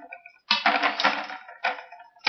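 A steel ruler and a thick copper wire clinking and scraping against each other and the board as the ruler is laid across the wire spiral to take a measurement. The clatter starts about half a second in and dies away near the end.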